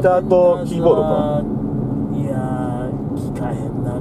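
Steady low drone of road and engine noise inside a moving car's cabin, with voices over it in the first second and a half.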